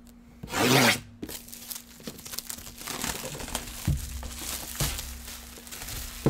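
Plastic shrink-wrap being torn and pulled off a cardboard box. There is one loud rip about half a second in, then crinkling of the plastic and a couple of soft knocks from the box being handled.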